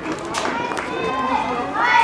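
Indistinct voices talking in the background, no clear words.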